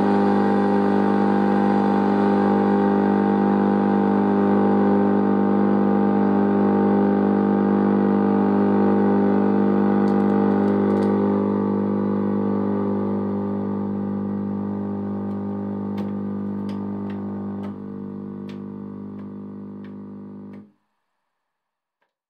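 DIY Belgian Triple Project drone synthesizer, played through a multi-effects unit, holding a dense drone of several tones with slow beating. It slowly fades, drops a step in level about 18 seconds in, and cuts off suddenly shortly after, with a few faint clicks in its second half.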